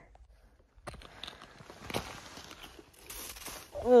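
Old granular snow crunching and scraping, getting louder about three seconds in, after a near-silent first second.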